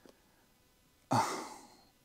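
Near silence, then about a second in a man lets out a breathy sigh that fades away.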